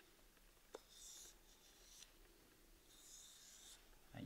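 Faint rubbing hiss of a full-flat-grind knife edge being pulled along a leather strop loaded with coarse stropping compound: two slow strokes, about two seconds apart, with a light click just before the first.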